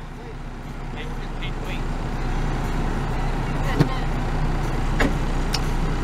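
Idling car engine and air-conditioning blower heard from inside the parked car's cabin: a steady low hum that grows louder over the first couple of seconds. Two light clicks in the second half.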